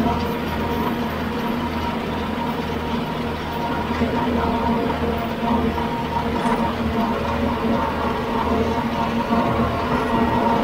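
Kioti RX7320 tractor's diesel engine working steadily under load, pulling a Titan 1912 flexwing rotary cutter through heavy grass, with a steady whine over the engine and a low throb that swells and fades about twice a second.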